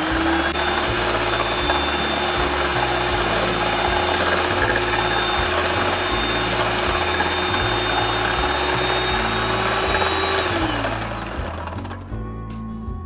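Electric hand mixer running at low speed, its beaters whipping instant coffee and sugar into a froth in a steel bowl, with a steady motor whine. Near the end the motor winds down and stops.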